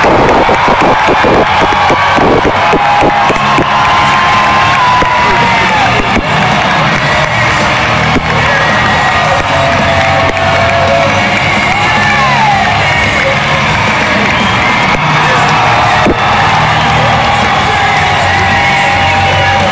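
Loud music over an arena sound system, likely a wrestler's entrance theme, with a large crowd cheering and shouting over it. The first few seconds carry a quick, regular beat.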